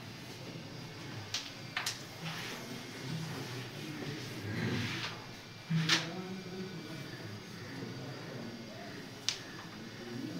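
Sharp clicks of a carrom striker and wooden carrom coins knocking on the board: two close together about a second and a half in, then single clicks near six and nine seconds.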